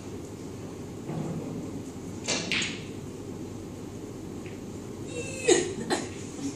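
A dancer's hands, feet and body against a metal dance pole: a few knocks and rubs over steady room hum, the loudest coming about five and a half seconds in as she swings out.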